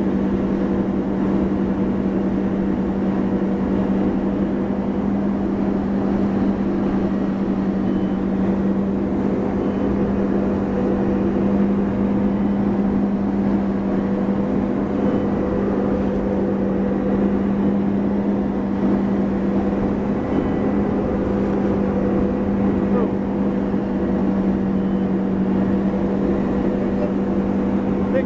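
Tow boat engine running at a steady speed for a slalom pass: an even drone with a constant low hum, over the rush of water from the wake.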